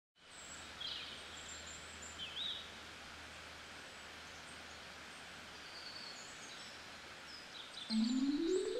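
Faint outdoor ambience: a steady low background hum with a few short, high bird chirps, one about a second in and another around two seconds. Right at the end a rising run of mallet-instrument music begins.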